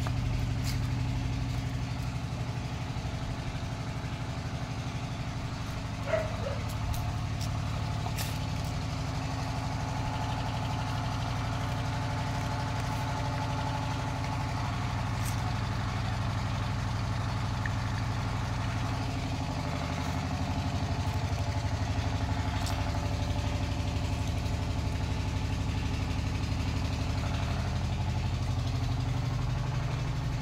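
An engine idling steadily, its pitch shifting slightly a couple of times, with a few faint clicks over it.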